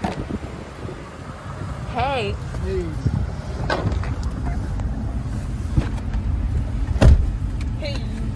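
A person opens a pickup truck's rear door and climbs into the back seat: handle and latch clicks and seat rustling over a low engine rumble inside the cab. About seven seconds in comes a loud thump as the door shuts.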